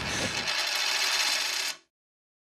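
A rapid, high-pitched mechanical rattle of many fine ticks that cuts off suddenly after about a second and a half.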